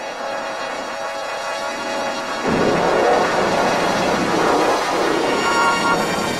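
Film-company logo music run through audio effects and distorted. It carries a noisy rumble that jumps up in loudness about two and a half seconds in.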